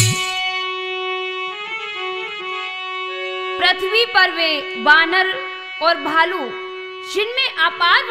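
Harmonium holding a steady chord as the tabla drops out; from about three and a half seconds in, a woman sings a gliding devotional folk melody over it.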